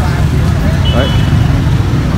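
Loud, steady low rumble, with one short spoken word about a second in and a brief high tone just before it.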